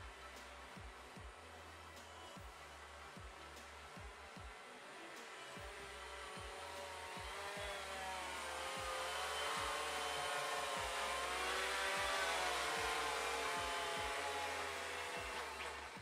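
DJI Phantom FC40 quadcopter in flight, its motors and propellers giving a whine of several wavering pitches as it holds and corrects its position. It grows louder from about a third of the way in, is loudest in the middle as it passes close, and fades near the end.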